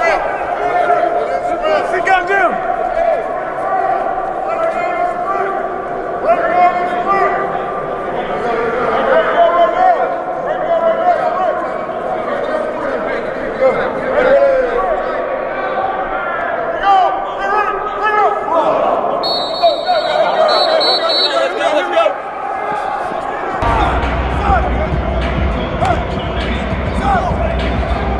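Voices of football players and coaches at practice, many talking and calling out over one another, with music underneath. A low steady rumble joins for the last few seconds.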